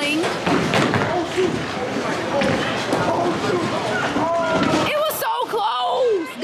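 Bowling alley din: indistinct overlapping voices over a continuous noisy clatter, with a sharp knock about five seconds in.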